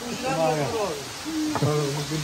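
Men's voices talking, then a drawn-out, low, steady vowel sound in the second half.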